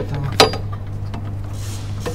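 Two sharp clicks about half a second apart as hands handle parts behind a truck cab's front panel, over a steady low hum.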